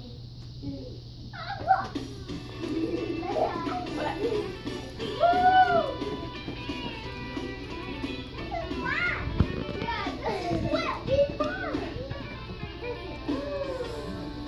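Several small children chattering and calling out, with a few louder squeals, over a recorded children's dance song playing in the background.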